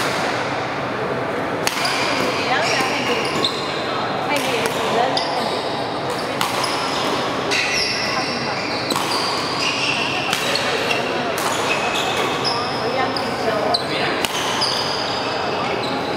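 A badminton rally in a large hall: sharp racket strikes on the shuttlecock and many short, high squeaks of shoes on the court, over a steady echoing background murmur.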